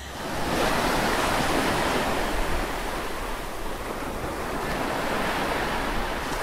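A steady rushing noise with no tune or beat, swelling in over about the first half second and then holding even: an ambient whoosh sound effect under an outro card.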